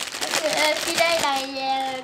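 Crinkling of a foil toy packet being handled, with bits of voice; about a second in, a voice holds one long steady note.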